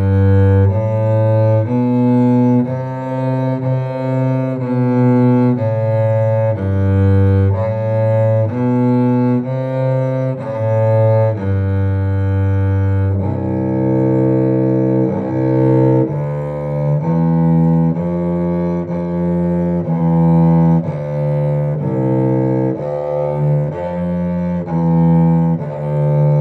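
Solo cello played with the bow: an étude in a steady line of sustained notes, each lasting about half a second to a second. The line sits low at first and moves higher about halfway through.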